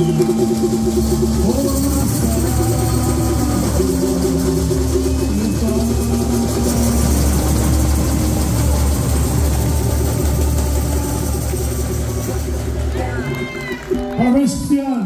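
Samba school group singing a melody together over a steady low rumble, with a louder voice breaking in near the end.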